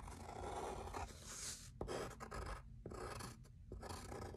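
Faint scratching of a pencil drawing on paper, with a few light taps.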